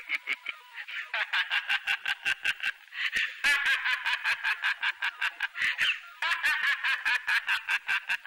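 A man laughing hard in long runs of rapid, quacking 'ha-ha' bursts, about five a second. The runs break off briefly about three and six seconds in.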